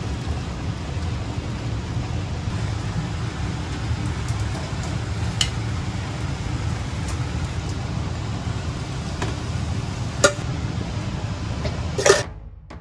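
Steady low rumble of a restaurant kitchen's running equipment, with a few sharp clinks of kitchenware. The loudest clink comes about ten seconds in.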